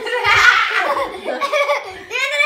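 A woman and a boy laughing together, loudly, in short breathy bursts.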